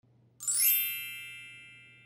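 A bright chime sound effect: a single ding about half a second in, with a shimmering, jingly attack and several high ringing tones that fade away slowly.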